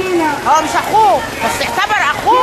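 A woman speaking loudly in Egyptian Arabic, only speech.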